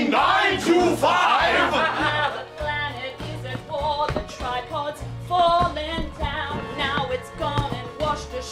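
A musical-theatre song: the stage cast singing over instrumental accompaniment with a repeating bass line, the voices loudest in the first two seconds.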